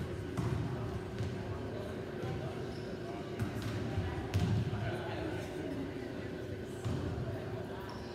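Volleyballs being struck and bouncing on a hardwood gym floor during warm-up: several sharp smacks at irregular moments, the loudest a little past the middle, over background chatter and a steady hum.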